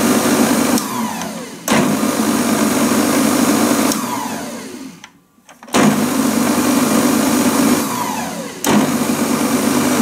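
Moulinex Masterchef 750 Duotronic food processor motor running with an empty bowl, switched off three times and winding down with a falling whine before it starts up again suddenly. The middle stop is the longest, letting the motor nearly come to rest.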